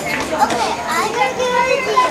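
Children's voices, talking and playing, with other people's chatter in the room.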